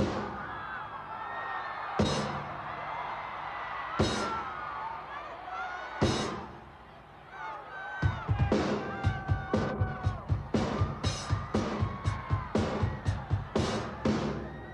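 Loud single hits from the band through the PA, one every two seconds, with a large crowd screaming and whooping between them. About halfway through the hits come faster, two to three a second, in an even run over the continuing screams.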